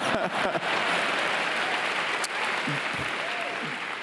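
Large arena audience applauding, a steady sheet of clapping that eases slightly toward the end, with a few voices faintly mixed in.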